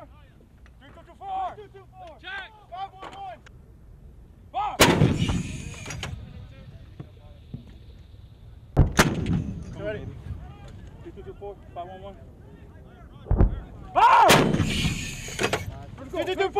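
An M119 105 mm towed howitzer firing: three loud blasts about four to five seconds apart, each trailing off in a rumble of about a second, with a shorter dull thump just before the last.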